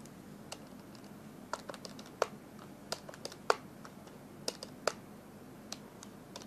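Calculator keys pressed one after another, about a dozen irregular clicks as a sum is keyed in.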